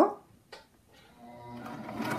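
Electric sewing machine starting up about a second in and running, its motor hum growing louder as it stitches through coiled cotton rope. A small click comes just before it.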